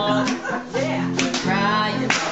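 Acoustic guitar strummed as accompaniment to a woman singing.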